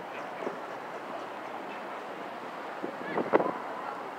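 Busy city street ambience: a steady wash of traffic noise, with a brief, sharper sound about three seconds in.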